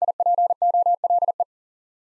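Morse code sent as a single steady beep tone at 40 words per minute, keyed in six quick letter groups that spell "DIPOLE". It stops about one and a half seconds in.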